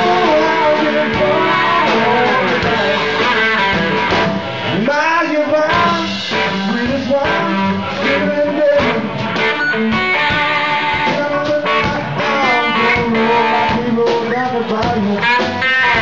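Live blues-rock band playing: electric guitar with notes bending up and down in pitch over a drum kit.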